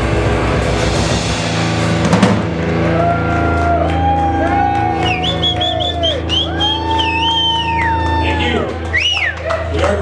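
Live grunge-country rock band playing the close of a song. A full-band hit comes about two seconds in, then held chords and a low bass note ring on under long sustained guitar notes that bend up and down.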